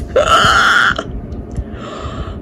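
A woman's excited wordless cry of delight, about a second long, followed by a breathy gasp near the end.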